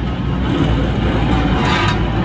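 Steady diesel engine rumble from a wheel loader creeping forward, with a garbage truck running alongside. A short rasping noise comes near the end.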